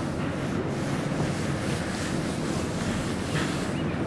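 Steady wind buffeting the microphone over the wash of river water around a boat.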